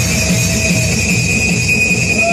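Hardstyle electronic dance music from a DJ set: a steady high-pitched tone held over a dense low bass.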